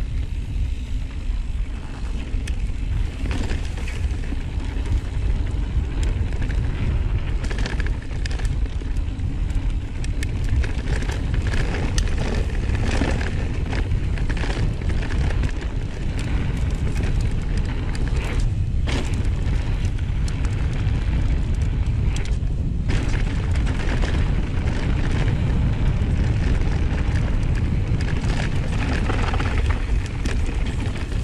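Wind rumbling over the microphone of a camera on a mountain bike's handlebars, with tyre noise on a dirt trail and frequent short clacks and rattles as the bike runs over bumps.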